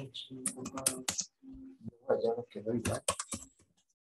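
Typing on a computer keyboard, a run of quick key clicks, with a person's voice talking low underneath.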